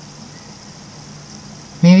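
Quiet room tone with a faint steady low hum, then a woman's voice begins speaking just before the end.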